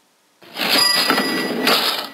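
Cash-register sound effect, a bell ring with the clatter of a cash drawer, starting about half a second in. It marks the cash tender going through.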